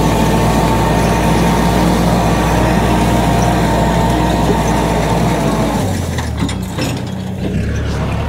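Kubota L5018 tractor's diesel engine running steadily under load while it drags a disc plough through the soil, with a dense mechanical clatter over the engine note. About six seconds in, the deep hum thins and the sound changes.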